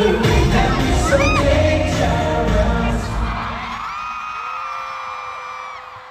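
Live pop song's bass-heavy backing track and vocals at an arena concert, cutting out about three and a half seconds in. Long, high-pitched screams and cheering from the audience carry on after it.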